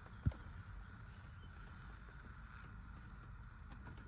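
Faint steady low background rumble, with one soft knock shortly after the start.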